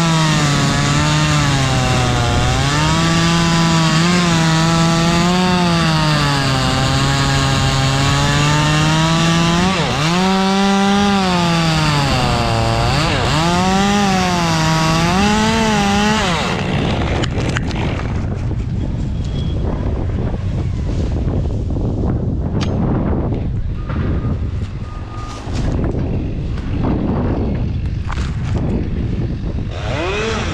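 Top-handle chainsaw cutting into a pine trunk, its engine pitch dipping and rising as it loads up in the cut. The saw stops suddenly about halfway through, leaving rustling and scattered knocks.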